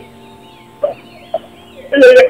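Two short, stifled giggles, about a second in and again half a second later, coming through a video-call connection over faint steady background music.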